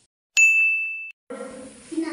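A single bright ding: one steady high tone that starts sharply and cuts off suddenly after under a second, an edited-in bell sound effect set between stretches of dead silence.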